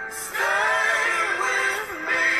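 A voice singing with music, from a cartoon clip playing through a computer's speakers: a long held note swells in about half a second in and lasts almost to the end.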